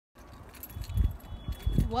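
Low rumbling thumps and scattered light clicks from a handheld phone microphone outdoors, with a woman's voice starting right at the end.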